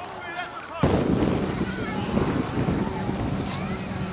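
Outdoor sound on the sideline of a football field: distant men's shouts, then about a second in a sudden loud burst of rumbling noise that carries on under the voices.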